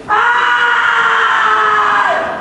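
Taekwondo practitioner's kihap: one loud shout held for about two seconds at a nearly steady pitch that sags slightly, then drops away at the end.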